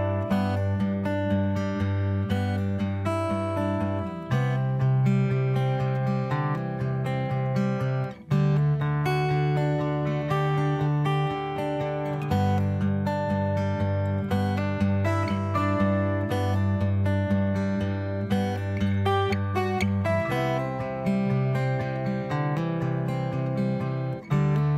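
Instrumental background music, with the bass notes changing every few seconds and a brief break about eight seconds in.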